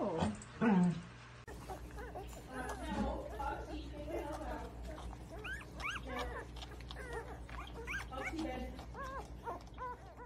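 Newborn German Shorthaired Pointer puppies squeaking and whimpering as they nurse: a quick run of many short, high, rising-and-falling squeaks, starting about a second and a half in. Before it comes a brief, louder voice-like sound.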